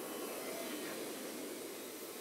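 Steady rushing noise of a steelworks furnace blowing, even throughout with no strokes or rhythm.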